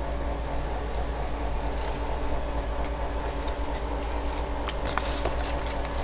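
A steady low hum from a fan or mains-powered bench equipment, with faint rustling and small clicks of hands handling parts on a workbench. The handling noise grows busier near the end.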